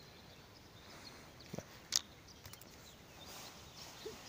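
Quiet outdoor background with one sharp click about halfway through, followed by a few faint ticks.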